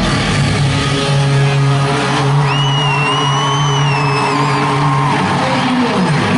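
Live rock band playing at full volume: electric guitar and drums under a long held low note, with a high wavering tone over it from about two and a half seconds in.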